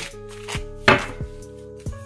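Deck of oracle cards being shuffled by hand: a few sharp card slaps, the loudest about a second in, over steady background music.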